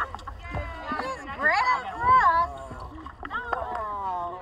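Excited people's voices: long wordless exclamations that sweep up and down in pitch, in two bursts, over a steady low rumble.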